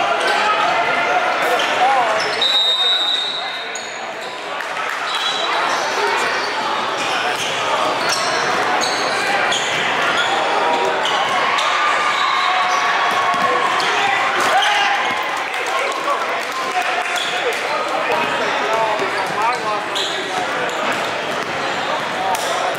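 Basketball bouncing on a hardwood gym floor amid live game sound, with indistinct voices of players and spectators echoing in a large gym.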